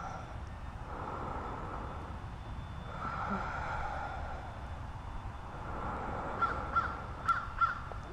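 Outdoor ambience with birds calling: drawn-out calls in the first half and a few short chirps near the end, over a steady low rumble.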